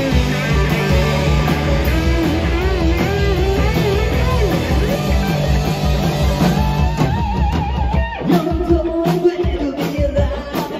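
Live rock band playing: an electric guitar lead with bent notes over bass and drums, moving to long held notes with vibrato in the last few seconds.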